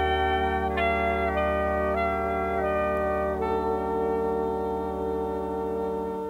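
Big band jazz ensemble of saxophones, trumpets and trombones playing long sustained chords, the upper voices stepping through a few chord changes over a steady low bass note.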